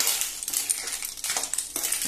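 Clams in their shells clattering against one another and a metal spoon scraping the pan as they are stirred, a busy run of small knocks and scrapes.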